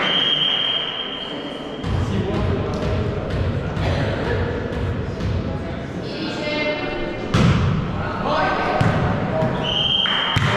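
Referee's whistle blows a steady, single-toned blast of about a second at the start, signalling the serve. A volleyball rally follows in a gym hall, with the ball being hit (the sharpest hit comes about seven seconds in) and players' and spectators' voices. A shorter whistle near the end stops the rally as the ball lands.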